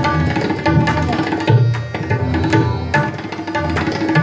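Tabla solo in teental, a 16-beat cycle: quick strokes on the dayan with deep, resonant bayan bass strokes, over a repeating lehra melody.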